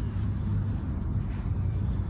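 A steady low outdoor rumble with no distinct events, with a few faint, short high chirps above it.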